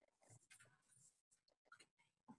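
Near silence: room tone from an open call microphone, with a few faint, brief scratching and rustling noises.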